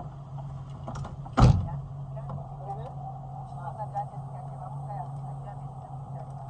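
A car door shutting with one heavy thump about one and a half seconds in, over the steady hum of the car's idling engine, with faint voices after.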